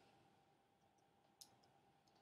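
Near silence: faint room tone with a steady low hum, broken by a single faint click about one and a half seconds in.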